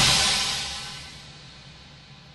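A single crash cymbal and bass drum hit from the theatre band, its cymbal ringing and fading away over about two seconds: a sting closing the scene as the stage lights go out.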